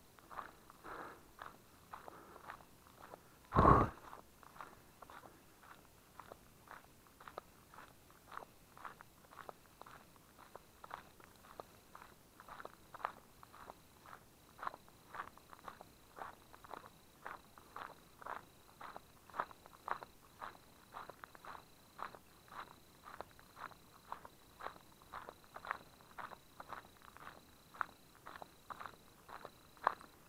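Footsteps on a gravel road at a steady walking pace, about two steps a second, with one louder thump about four seconds in.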